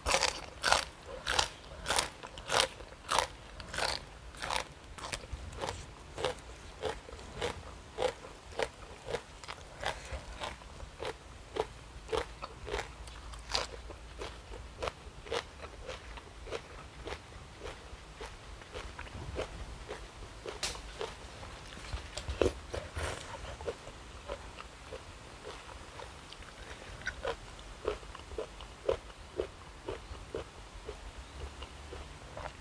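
Close-up crunchy chewing of crisp raw vegetables, in regular crunches about two a second. The crunches are loudest in the first few seconds, then carry on more softly.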